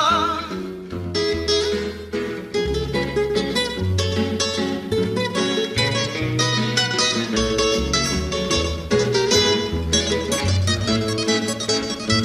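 Instrumental guitar passage in Peruvian criollo style: acoustic guitars picking a quick melodic run over a walking bass line, after a sung note with vibrato fades out right at the start.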